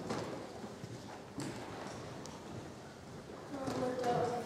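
Footsteps on a hard lecture-hall floor with a few sharp knocks. A person's voice starts speaking near the end.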